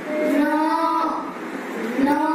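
Children's voices chanting together in a long, drawn-out sung call that rises and falls in pitch for about a second. The next call begins at the very end.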